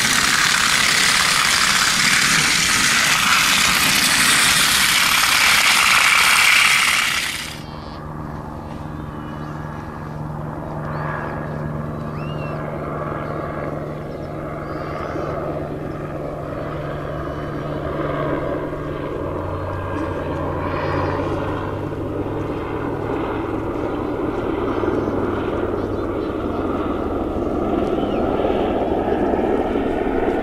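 Trackmaster motorized toy engine running along plastic track, loud and noisy, cut off abruptly about seven seconds in. After that a quieter steady low drone with faint voices.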